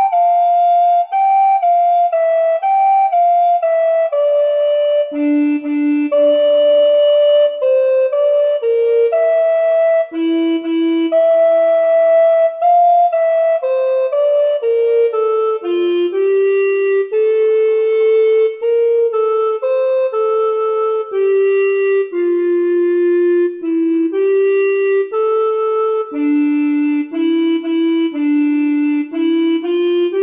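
Tenor recorder playing an unaccompanied slow melody, one note at a time, in stepwise phrases with a few longer held notes.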